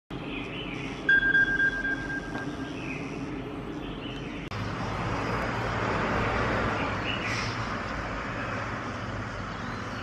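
An iPod alarm sounding with one steady high tone lasting about a second and a half, over a steady background with a few faint chirps. About four and a half seconds in the sound cuts to a steadier, slightly louder background hum.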